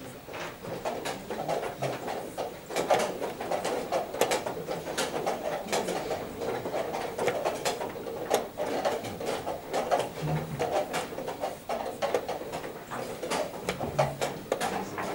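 Wooden chess pieces set down on a board and chess clock buttons pressed in quick succession during a blitz game: a run of short, sharp clicks and knocks, several a second, over a steady background noise.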